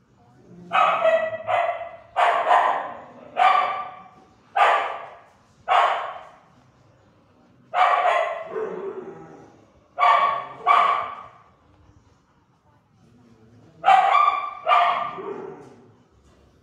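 Dog barking in a shelter kennel: about a dozen loud barks in bursts of one to three, separated by short pauses, each echoing off the hard walls.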